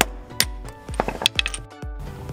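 A small sledgehammer strikes a bolt set in a steel 12-point socket in a series of sharp metal-on-metal blows, several in quick succession about a second in. The blows are driving out a removed wheel lock nut that is stuck tight inside the socket.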